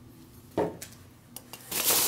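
Hands rummaging through polystyrene foam packing peanuts in a cardboard box, a loud rustle that starts near the end. Before it, a quiet stretch with a single knock about a third of the way in.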